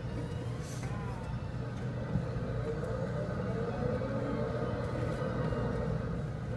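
Coin-operated school-bus kiddie ride running with a steady low hum.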